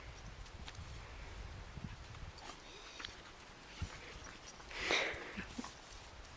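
Two dogs, an adult Great Pyrenees and a brown dog, playing on grass: faint scuffling of paws and bodies, with a few light clicks and one short rushing noise about five seconds in.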